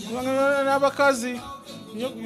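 A man singing, holding long sustained notes with a brief break about a second in.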